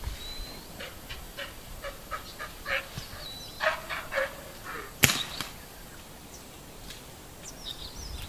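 Outdoor animal or bird calls, a run of short repeated notes over the first five seconds, then a single sharp crack about five seconds in.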